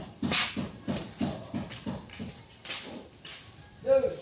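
Footsteps slapping on a wet concrete floor, about three steps a second.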